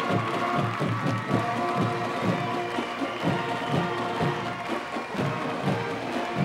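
Marching band playing: brass holding chords over a steady, regular drum beat.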